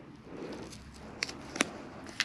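Faint rustling of stiff cardboard craft strips with brass brads being handled, with two light clicks past the middle.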